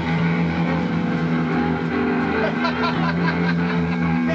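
Distorted electric guitar and bass holding a steady, sustained chord through amplifiers, with some crowd voices coming in partway through.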